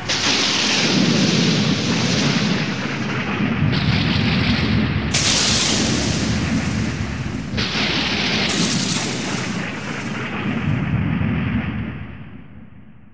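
A long rumbling noise effect, like an explosion or thunder rumble, cuts in suddenly as the song's music stops. The hiss in it jumps up and down in steps every second or two, and it begins to fade near the end.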